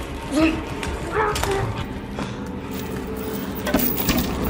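A man's muffled, choked whimpering cries as he is suffocated under clear plastic sheeting, with the plastic crinkling and rustling around him.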